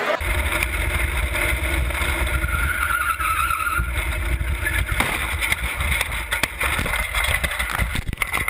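Heavy wind rumble and road noise from a camera mounted on a small open yellow kart moving fast along a paved road, with a few sharp knocks about halfway through.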